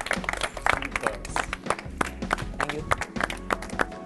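A group of children clapping, quick irregular handclaps, with voices and music underneath.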